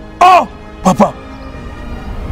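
A voice gives one short, loud call that falls in pitch, then two quicker calls about a second in, over faint background music.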